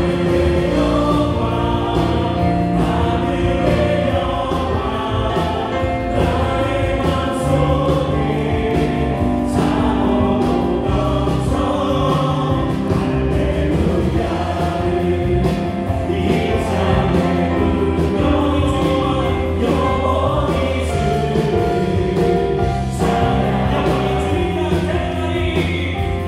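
Live worship band playing a gospel song: electric guitar, bass guitar, keyboard and drum kit, with steady bass notes and a regular drum beat.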